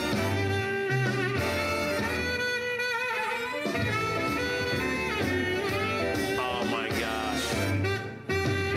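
Music from a CD playing on a Bose Wave Music System IV tabletop stereo, at a steady level with a running bass line.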